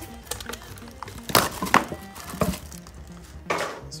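Plastic shrink wrap being torn and pulled off a metal trading-card tin: several sharp rips and crinkles, the loudest about a second and a half in and another near the end, over steady background music.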